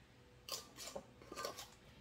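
Metal screw bands being twisted onto glass pint canning jars of tomatoes, fingertip tight: a few faint, short scraping clicks of metal on the glass threads.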